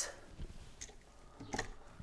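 A few faint clicks and rustles of an occupancy sensor switch and its wires being handled and pushed back into a wall electrical box.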